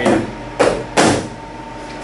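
Hinged plastic lid of a welder's top storage compartment being pressed shut: three sharp plastic clacks within about the first second.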